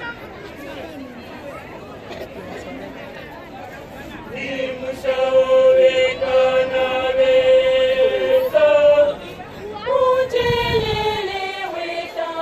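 Low murmuring of voices, then a choir begins singing about four seconds in, holding a long note and later gliding down in pitch.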